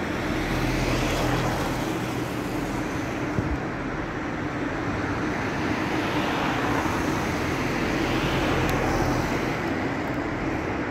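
Steady road traffic on a city street, with a low engine hum from passing vehicles swelling near the start and again through the second half.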